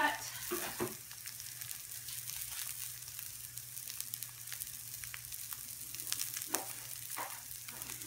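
Breaded pork schnitzel frying in margarine in a nonstick pan: a steady sizzle with fine crackling throughout, and a few brief knocks near the start and again around six to seven seconds in.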